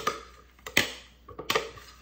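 A utensil knocking and scraping against a plastic food-processor bowl as riced cauliflower is emptied out: two sharp knocks about three-quarters of a second apart, with a few fainter clicks.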